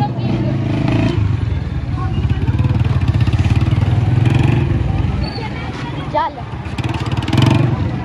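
Motorcycle engine running hard as the bike pulls away, a dense low pulsing that eases off about five seconds in and picks up again near the end. Voices and a short call from the onlookers sound over it.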